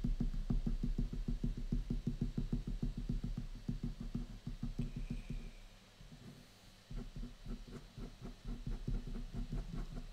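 Rapid hatching strokes of a pen on paper over a drawing board, each stroke a soft tap, about eight a second. They stop for about a second past the middle, then start again.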